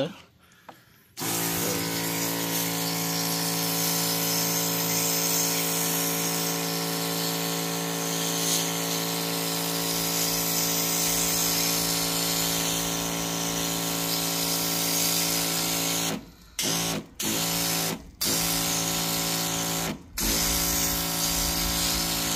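Pressure washer running and spraying a foamed air-conditioner condenser coil: a steady motor-and-pump hum under a hiss of spray. It starts about a second in and cuts out briefly four times near the end, each time for a fraction of a second.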